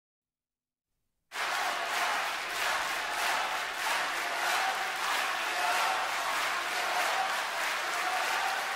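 Complete silence for about a second, then an audience applauding steadily.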